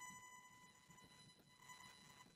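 Near silence: room tone with a faint, steady high-pitched electrical buzz from a faulty microphone.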